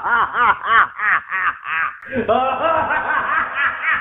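A person laughing in a rapid string of short, high-pitched 'ha' bursts, about five a second, that run into a longer, higher laugh about halfway through.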